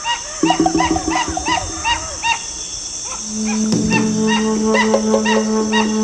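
A rapid series of short animal calls, about four a second, over a steady high insect drone, with background music holding low sustained notes that swell about three seconds in.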